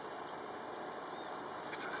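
Steady, even noise of a small tour boat's motor running at low speed on the water.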